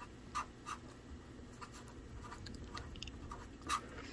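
Marker pen writing on a paper worksheet: a faint series of short strokes on the paper, with a slightly louder one near the end.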